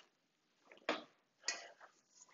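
Two light clicks about half a second apart, from a container being handled at a stainless steel mixing bowl.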